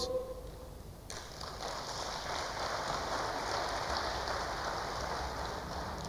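Audience applauding, starting suddenly about a second in and then keeping up at a steady level.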